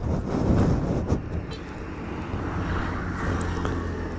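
Road traffic: a vehicle's engine with a low steady hum, heard in the open air.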